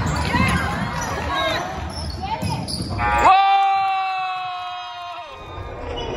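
A basketball being dribbled on a hardwood gym floor amid spectators' voices. About three seconds in, a loud held tone cuts in, holds nearly level for about two seconds, then stops abruptly.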